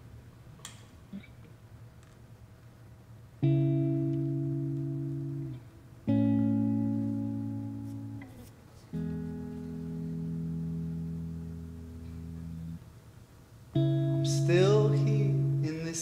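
Black Stratocaster-style electric guitar playing slow, held chords. The first is struck about three and a half seconds in, and four in all ring out and fade over a few seconds each. A man's voice starts singing near the end.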